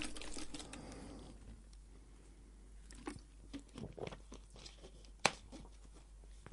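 A person drinking from a plastic water bottle: quiet swallowing and handling of the bottle, with scattered small clicks and one sharp click about five seconds in.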